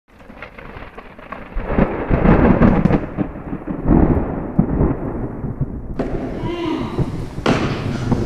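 Thunder rumbling with rain, swelling about a second and a half in and rolling in uneven surges, with a sharp crack near the end.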